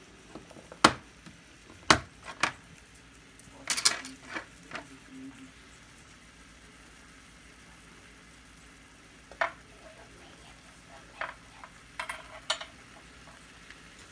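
Sharp knocks and clicks of a wooden spoon against a large nonstick frying pan: single ones about a second apart, a quick cluster about four seconds in, and more near the end. Under them, a faint steady sizzle of ground turkey and vegetables frying.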